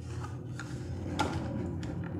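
Cardboard phone box being handled: three light taps and scrapes of the lid against the inner tray, the loudest about halfway through, over a steady low hum.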